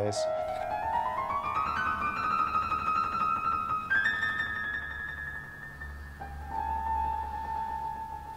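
Background piano music: a slow rising run of notes, then long held notes.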